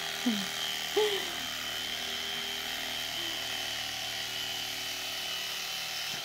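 Electric carving knife running steadily as it cuts through a foam mattress, a constant high motor whine. Two short voice sounds come in the first second or so.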